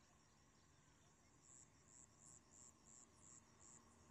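Faint insect chirping: a short, high-pitched chirp repeated about three times a second, starting about a second and a half in and stopping shortly before the end, over a fainter steady high trill.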